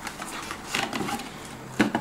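Handling noise of a plastic squeeze tube being picked up and turned over: soft rustling, then one sharp tap near the end.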